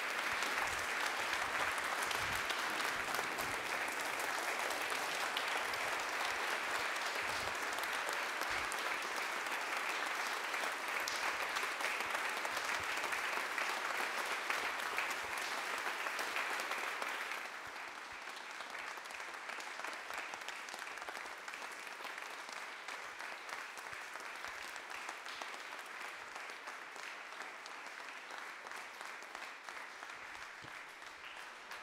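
Audience applauding steadily. The clapping drops suddenly to a softer level a little past halfway, then slowly tapers off.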